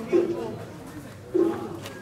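Pigeon cooing: two short, low, level-pitched coos, one just after the start and one about a second and a half in, over a murmur of voices.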